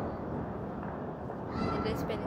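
Steady background din of distant firecrackers, with no single sharp bang. Near the end there is a short, high-pitched voice sound.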